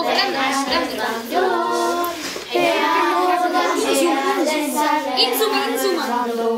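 A boy singing in melodic phrases, with a short break a little over two seconds in.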